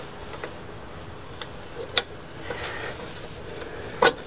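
Light metallic ticks and clicks of brake pad hardware being handled, as the pad retaining pin is threaded through an Akebono caliper. A few faint ticks and one sharper click about halfway.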